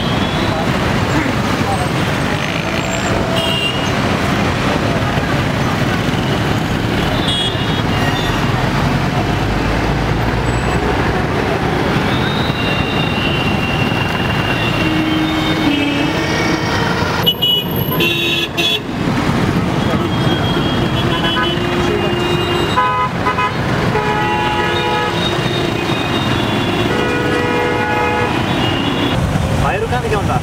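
Busy city road traffic: a steady din of motorcycles and cars with horns honking again and again, several overlapping toots in the last few seconds.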